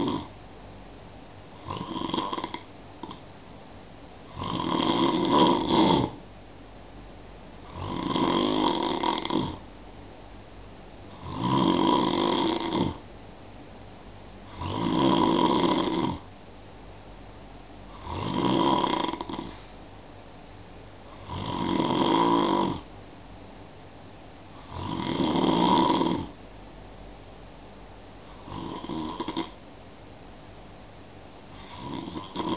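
A sleeper snoring steadily: one long, loud snore about every three and a half seconds, each lasting a second or two, with quiet breathing between.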